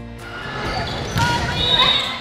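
Live sound of an indoor volleyball match in a gymnasium: voices of players and spectators calling out over thumps of the ball, with the hall's echo. It grows louder about halfway through.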